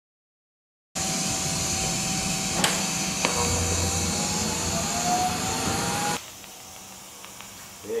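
DC lift-arc TIG welding arc on aluminum under helium shielding gas: a steady hiss that starts abruptly about a second in, with a couple of sharp crackles. About six seconds in it drops to a much quieter steady hiss.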